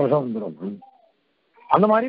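Only speech: a man talking in a discourse. His voice stops a little under a second in and picks up again near the end.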